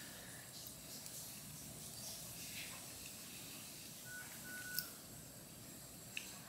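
Quiet room tone, with two faint short beeps about four seconds in and a soft click just after them.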